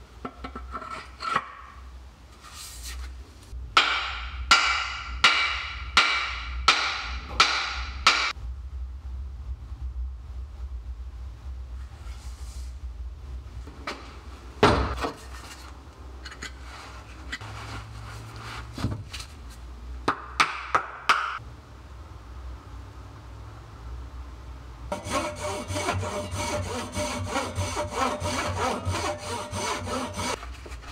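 Hammer blows on a new wooden axe handle being seated in a steel axe head: about eight sharp, ringing strikes in quick succession, with a few more later. Near the end, a hand saw cuts through wood with a steady back-and-forth rasp, trimming the handle.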